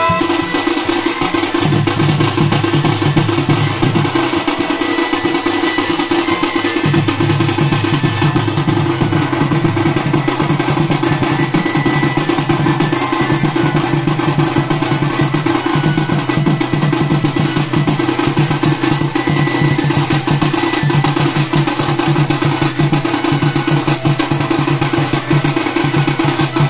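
Dhol barrel drums played in a fast, driving rhythm, with dense, evenly repeating strokes throughout.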